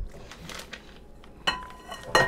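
Metal kitchen tongs clink once against a glass bowl about one and a half seconds in, and the glass rings briefly. Before that there is faint handling noise.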